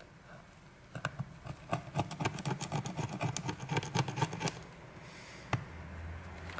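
Small flathead screwdriver scraping along the edge of a phone's frame in quick repeated strokes, clearing out leftover shards of the old screen glass and adhesive. The strokes start about a second in and stop after about four and a half seconds, followed by a single click.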